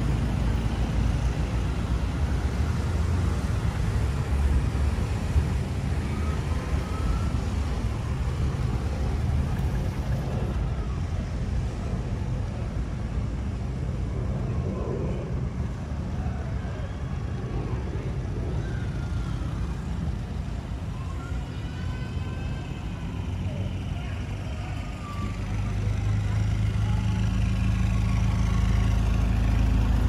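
A passenger van's engine idling close by, a low steady hum that is strongest at the start and over the last few seconds. Faint voices of people talking are heard in the middle.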